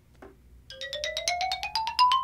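A sparkling 'magic' chime sound effect that begins under a second in: a tone sliding steadily upward in pitch under a fast run of bright, bell-like notes.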